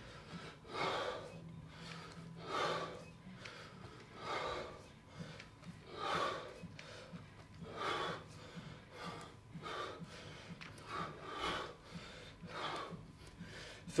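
A man breathing hard and rhythmically through a set of kettlebell swings: a short, forceful breath about once a second, in time with the swings.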